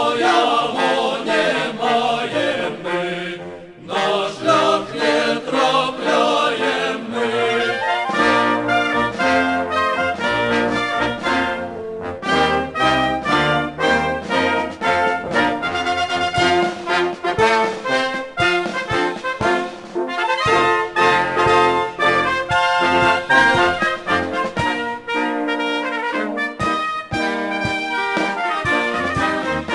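Brass band music playing a march with a steady beat, briefly dropping away about four seconds in.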